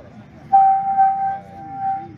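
A high, steady whistle-like tone, blown in one long blast of about a second and a half that swells three times.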